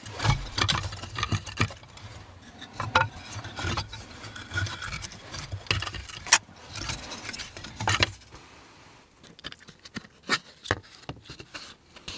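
Handling sounds: scattered sharp clicks, knocks and scrapes of small objects being picked up and set down, with rustling, the loudest clicks about six and eight seconds in, then quieter with a few clicks near the end.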